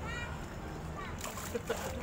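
Swimming-pool water splashing close to the microphone, starting a little over a second in, with a brief word of speech over it.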